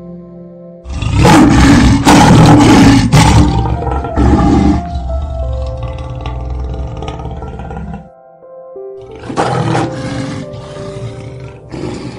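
Male lion roaring: a loud bout of roars begins about a second in and trails off over several seconds, then a second, quieter bout comes a little after the middle. Soft piano music plays underneath.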